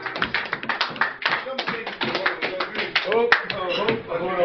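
People clapping their hands, a quick run of sharp claps several a second, with voices calling out near the end.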